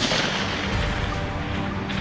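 A single rifle shot at the very start, its report echoing away over about a second, with background music playing throughout.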